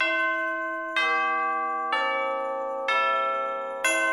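Music of bell tones: a slow melody of five struck notes, about one a second, each ringing on and fading.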